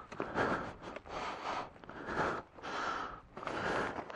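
A man breathing hard and close to the microphone, in even, noisy breaths, about five in four seconds.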